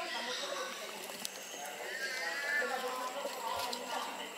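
Indistinct murmur of people's voices, too low to make out words, over a faint steady high-pitched hum.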